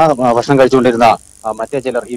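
Speech: a person talking in short phrases, with a brief pause a little past halfway.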